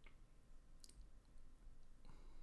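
Near silence with a low hum, broken by two faint short clicks: one at the start and a sharper one just under a second in.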